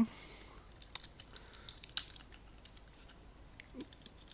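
Faint scattered clicks and light rustling as small pliers pick at insulating tape inside a plastic lamp housing, with one sharper click about two seconds in.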